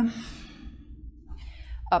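A woman's audible breath: a long exhale that trails off as she lowers from plank into chaturanga, then a short breath in about a second and a half later, over a low steady hum.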